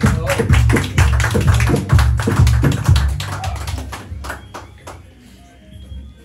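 Mariachi band playing a short, rhythmic passage: sharp strummed strokes over deep pitched bass notes, fading out about four to five seconds in.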